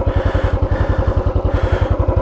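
Royal Enfield Classic 500's single-cylinder four-stroke engine pulling away from a standstill in second gear, its exhaust beating in a rapid, even rhythm.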